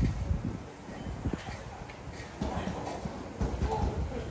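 Quick, irregular soft thuds of sneakers landing on artificial turf as the feet alternate in bench mountain climbers.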